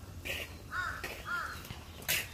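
A crow cawing: a brief higher call, then two short arched calls about half a second apart.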